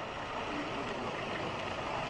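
Steady outdoor background noise: an even hiss and low rumble with no distinct event.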